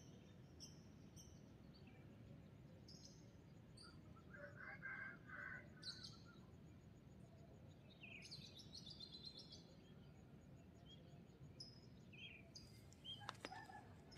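Near silence: low background noise with faint, scattered short bird chirps.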